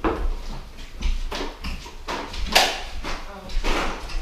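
Indistinct, muffled voices mixed with footsteps and bumps on a bare wooden floor.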